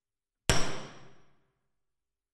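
A single sharp knock about half a second in, ringing briefly and dying away within about a second.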